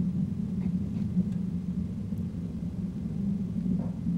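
Proton rocket's engines heard from afar during ascent, a steady low rumble with no change in pitch.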